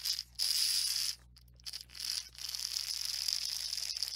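Water sloshing and gurgling in a jug as a man drinks from it, in two swigs: a short one near the start and a longer one from about two seconds in.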